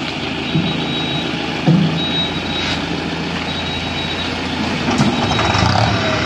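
Mahindra Bolero and Mahindra 605 tractor engines running steadily under load during a tug of war. A high-pitched electronic beep sounds for under a second, about every second and a half.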